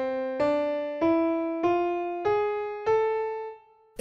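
A piano tone playing the A harmonic minor scale upward one note at a time, about one and a half notes a second, climbing through D, E, F and G sharp to the top A. The top A rings and fades out near the end.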